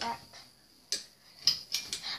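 A lamp switch clicking as the light is turned on: a sharp click about a second in and a louder one half a second later.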